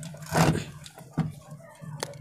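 A hand sewing machine being handled after oiling: a short rustle and a sharp click or two from its metal parts, over a steady low hum.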